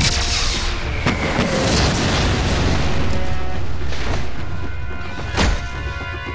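Animated-action explosion sound effects: several booming blasts, with a long rumbling one through the first few seconds, over dramatic background music.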